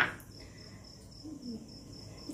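Faint insect chirping, most likely a cricket: a thin high note pulsing steadily several times a second. A brief sharp sound comes at the very start.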